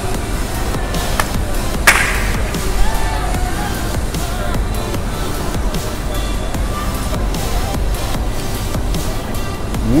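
Background music, with a sharp pop about two seconds in as a straw is jabbed through the sealed plastic lid of a bubble-tea cup.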